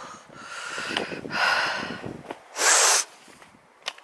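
A walker's breathing close to the microphone while climbing a woodland track: two long breaths, then a louder, short breath just before three seconds in.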